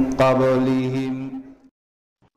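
A man reciting the Quran in a melodic chant, drawing out the last phrase until it fades away about a second and a half in.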